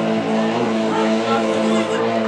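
Live rock band playing: electric guitars and bass holding steady sustained notes over drums.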